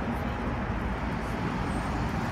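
New Flyer Xcelsior articulated city bus running as it pulls up close. Its steady, low engine and road noise blends with street traffic.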